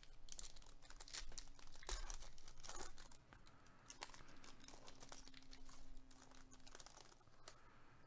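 Foil wrapper of a Panini Select football card pack being torn open and crinkled by gloved hands: faint, dense crackling, busiest in the first three seconds, then softer.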